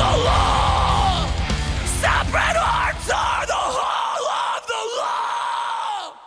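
Metalcore band recording, heavy guitars and bass under yelling voices. About four seconds in the instruments stop, and several voices keep yelling and whooping on their own.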